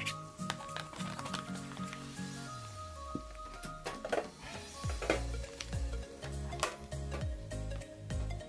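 Background music with a rhythmic bass line. Over it come scattered sharp clicks and taps from a plastic Blu-ray case and a metal tin being handled.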